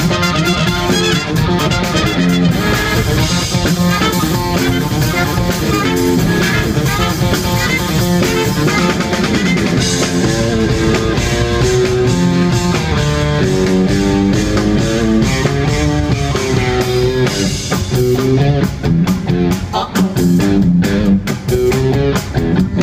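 Live funk band playing: saxophone and trumpet carry the melody over hollow-body electric guitar, bass and drum kit, with a steady beat.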